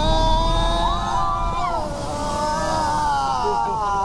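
Passengers letting out a long, drawn-out "whoa" together, slowly falling in pitch, as an amphibious Duck tour vehicle splashes into the river. The vehicle's engine runs low underneath, with rushing water.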